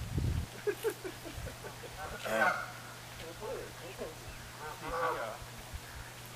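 Geese honking in a series of calls, loudest about two seconds in and again near five seconds. A short low rumble of wind on the microphone comes at the very start.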